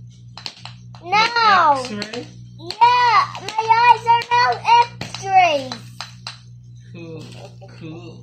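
A young child's high-pitched voice in three main wordless bursts with rising-and-falling pitch, and a softer one near the end, over a steady low hum and a few faint clicks.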